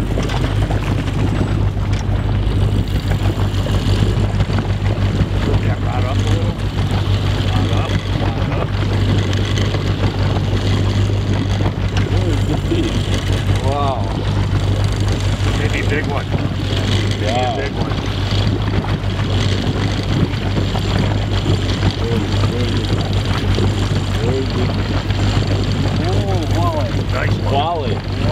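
Boat motor running steadily at trolling speed, a constant low hum, with faint voices now and then.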